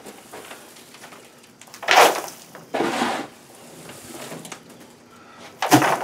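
Metal dustpan scraping wood shavings and droppings across the wooden floor of a rabbit pen, in three short scrapes: about two seconds in, around three seconds in, and just before the end.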